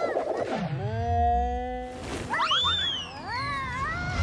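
Cartoon sound effects and wordless character vocal sounds as an animated ant rides a rolling ball. There is a quick falling sweep, then a steady held note, then sliding, wavering cries in the second half, with light music underneath.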